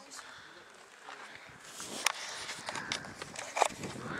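Footsteps scraping and crunching on a rocky trail, with a few sharp knocks, the loudest about two seconds in and again shortly before the end, mixed with the knocks of the camera being handled.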